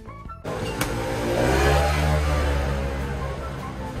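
A motor vehicle passing close by on the street: engine noise comes in suddenly about half a second in, swells with a deep rumble and then slowly eases, over the claw machine's electronic music.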